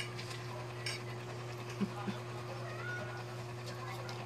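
A cat meows once, short and faint, about three seconds in, over a steady low electrical hum. Two soft knocks come just before it, about two seconds in.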